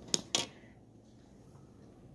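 Two short, sharp clicks in quick succession near the start, then low steady room tone.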